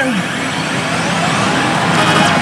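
Loud, steady din of a pachislot hall: many slot machines' electronic sound effects and music blending into one wash of noise, with a few faint electronic pitch glides over it.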